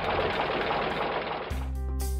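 Toy tow truck scraping through sand, a steady gritty rush with no tone in it. About one and a half seconds in it gives way to background music with keyboard notes and a beat.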